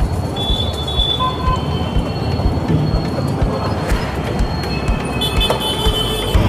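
Motorcycle riding at speed, its engine and tyre noise mixed with wind rushing over the camera's microphone in a steady rumble with low buffeting thumps.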